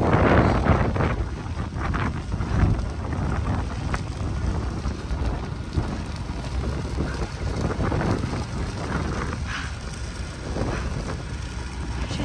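A wildfire burning close by: a steady rushing noise with crackling, with wind buffeting the microphone in gusts, loudest in the first second.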